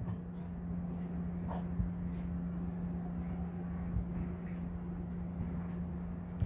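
Steady low electrical hum with a faint, thin high-pitched whine: the recording's background noise, with no speech.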